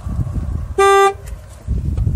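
A single short, loud car horn toot about a second in, lasting about a third of a second, over low rumbling noise.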